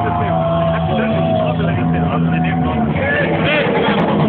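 Loud live-gig sound: crowd voices and shouts over a steady, droning note held by the band's amplified instruments.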